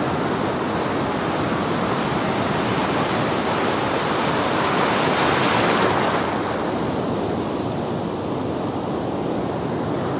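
Ocean surf washing steadily, one swell building to a peak about halfway through and then easing off.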